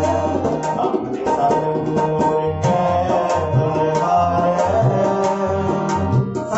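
Harmonium and tabla playing Sikh kirtan: the harmonium holds sustained reedy notes while the tabla keeps a steady rhythm of sharp strokes with deep bass strokes from the bayan.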